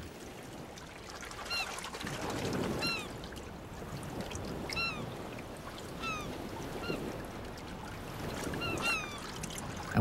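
Gentle sloshing and lapping of ocean water, with short high-pitched calls that rise then fall, heard about eight times, singly and in quick pairs.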